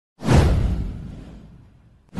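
Whoosh sound effect from an animated logo intro: a sudden rush with a deep low end, starting just after the beginning and fading away over about a second and a half.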